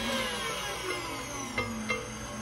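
KitchenAid stand mixer whipping egg whites for meringue. Its motor whine falls in pitch over the first second and a half, then holds steady. Two sharp taps sound near the end.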